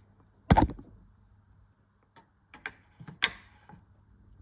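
Handling knocks and clicks as a cross-stitch piece in its frame is flipped over: one loud knock about half a second in, then a few light clicks and a second sharp knock near three seconds.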